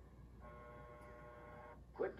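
Faint steady electronic tone, several pitches at once, starting about half a second in and stopping just before the end, over a low hum.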